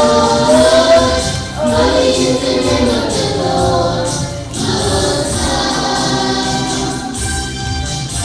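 Children's choir singing a gospel worship song in held phrases, pausing briefly between lines.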